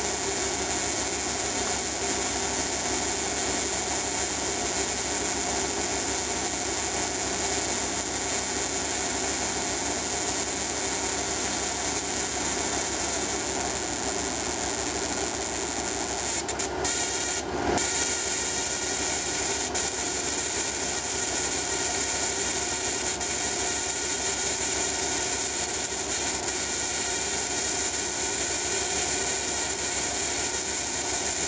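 Alternator-driven Tesla coil rig running at 20-volt operation: a steady mechanical drone under a strong high hiss, with a brief break a little past halfway.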